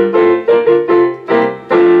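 Piano playing a quick run of chords, then a long held chord near the end.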